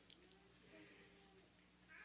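Near silence: room tone with a faint low steady hum, and a faint, short pitched sound a little under a second in.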